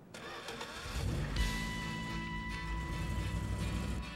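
Truck engine starting and then running with a rising rev about a second in. Music with sustained tones comes in over it about a second and a half in.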